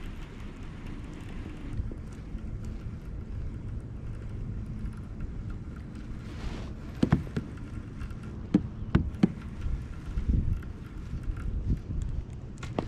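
A baitcasting reel being cast and reeled in from a kayak: a faint steady whine over low wind and water rumble, a brief whir about six and a half seconds in, then a handful of sharp clicks and knocks in the second half.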